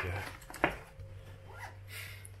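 Handling noise as a plastic badge on a lanyard is lifted and moved in front of the phone, with a short rasp and one sharp click about a third of the way in.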